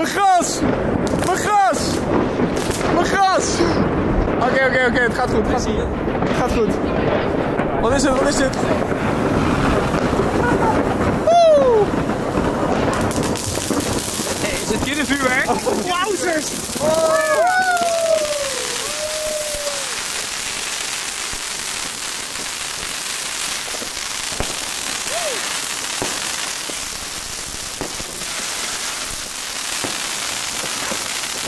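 Consumer fireworks going off in a box on a lawn: a run of sharp bangs over crackling in the first dozen seconds, then a steady crackling hiss.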